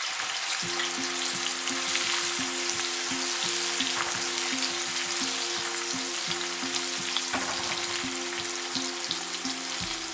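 Finely chopped onions deep-frying in hot oil in an aluminium kadai, a steady, dense sizzle, while a wire spider skimmer stirs them through the oil.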